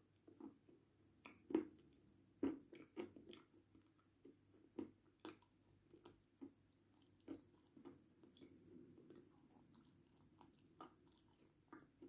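Faint chewing and biting of dry edible clay, with irregular small crunches and clicks, the sharpest about a second and a half and two and a half seconds in.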